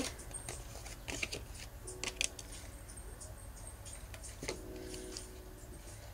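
Tarot cards being handled and dealt onto a stone board: faint scattered clicks and taps, with a couple of sharper ones about two seconds in.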